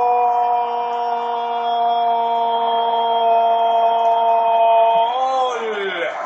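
A football commentator's long drawn-out "goool" shout, held on one steady pitch for about six seconds, then sliding down in pitch and ending near the end, celebrating a goal.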